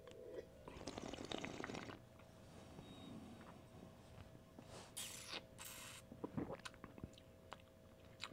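Faint mouth sounds of red wine being tasted: a soft drawn-in sip about a second in, then quiet swishing, a short breathy rush about five seconds in and a few small clicks, over a faint steady hum.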